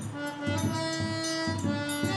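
A small forró band playing: a button accordion holds steady notes over regular zabumba bass-drum beats, with light high strikes of a triangle.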